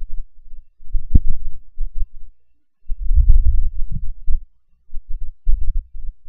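Low thuds and rumbling in uneven bursts, with one sharp click about a second in.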